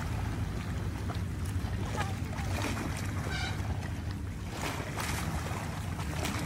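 River waves washing against a grassy bank, a steady wash of water that the narrator likens to loud sea waves, with a low rumble of wind on the microphone.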